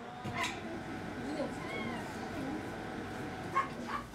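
Dogs in a veterinary hospital ward vocalizing, with short calls that rise and fall in pitch, over indistinct staff chatter.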